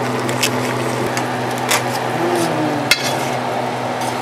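Beef liver, mushrooms and bacon sizzling in a stainless steel frying pan while a metal utensil stirs them, knocking against the pan in a few sharp clicks, the sharpest about three seconds in. A steady low hum runs underneath.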